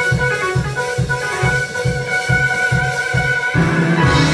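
Live church band music: a steady low drum-and-bass beat of about three pulses a second under sustained chords. The beat gives way to a held low note about three and a half seconds in.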